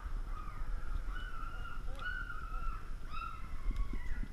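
One-week-old yellow Labrador puppies whining, about four short high calls of roughly half a second each, wavering in pitch, over a low background rumble.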